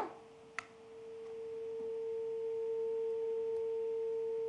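Steady telephone line tone from the studio's call-in phone line, a single pitch with a faint higher overtone. It grows in about a second in and then holds steady: the sound of a faulty or dropped caller's line.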